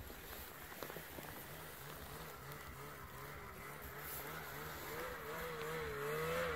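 Snowmobile engine idling, its pitch wavering slightly and growing gradually louder toward the end.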